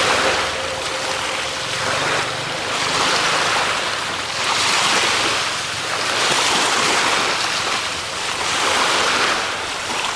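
Small sea waves washing in, the hiss of water swelling and fading about every two seconds, with wind buffeting the microphone.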